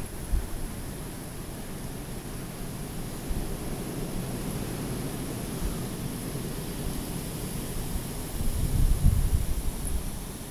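Wind buffeting the microphone: a steady low rumble that swells louder for about a second near the end.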